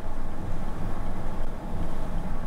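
Steady low engine and road rumble of a vehicle driving along, heard from inside the cab.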